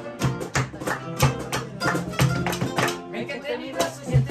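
Two acoustic guitars playing a lively tune together, strummed and picked, with sharp hand claps marking the beat.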